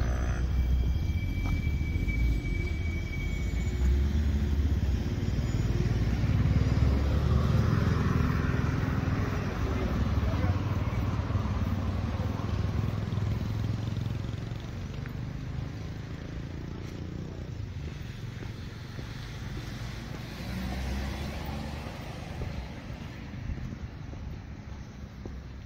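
Street ambience of passing motor vehicles: engine and tyre noise with a low rumble, louder over the first half and easing off after about fourteen seconds.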